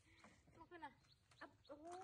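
Faint squeaks from a baby macaque: a few short falling chirps, then a drawn-out arching coo near the end.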